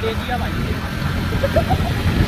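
Riding noise on a moving two-wheeler: wind buffeting the phone's microphone over the engine's low running.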